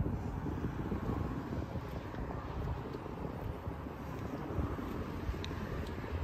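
Steady outdoor background noise: wind on the microphone with a low rumble, and no distinct events.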